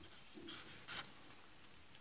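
Marker pen writing on paper: a few short strokes in the first second as the pen draws a box around the answer, then quiet.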